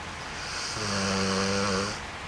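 A sleeping dog snoring: one snore that builds from a breathy rasp into a low, steady buzz for about a second, then cuts off just before the end.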